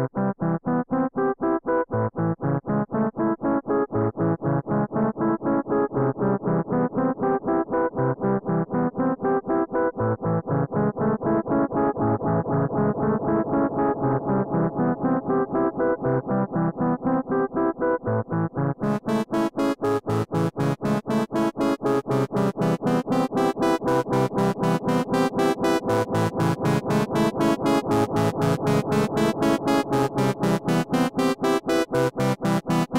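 A fast, evenly pulsing pattern of repeated notes heard fully wet through a Moog Moogerfooger MF-104M analog delay and an Eventide Rose delay in its dark, dirty mode, giving a gritty, grainy tone, with the delay feedback being adjusted. About two-thirds of the way through, the sound suddenly turns much brighter.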